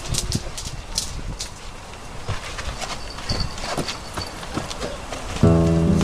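A run of irregular light knocks and clicks, like hard plastic clacking as hoops are handled and passed along. About five seconds in, music with sustained notes comes in and is louder than the knocks.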